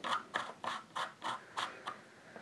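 Metal threads of a laser pointer being twisted by hand into a star tracker's screw-in adapter, giving short scratchy ticks about three times a second.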